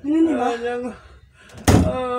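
A wooden door thumping once, heavy and sudden, near the end, between stretches of a person's voice.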